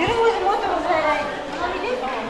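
People talking over one another, with one woman's voice close and loud at the start.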